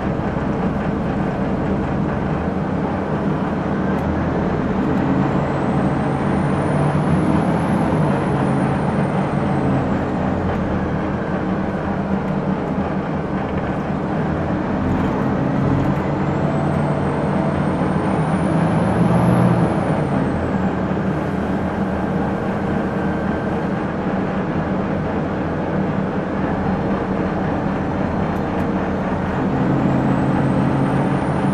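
Detroit Diesel Series 50 four-cylinder diesel with a ZF five-speed automatic in a 2001 Gillig Phantom transit bus, running under way. A steady engine drone carries a high whine that rises and falls twice, with the engine loudest near the second peak.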